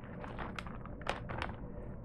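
A snack bag crinkling as a few light corn puffs are shaken out into a hand: a handful of short soft ticks and rustles over a steady low room hum.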